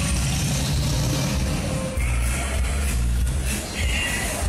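Loud fairground music with a heavy bass line, mixed with the rumble of a KMG Afterburner pendulum ride in motion. The bass shifts to a new note about halfway through.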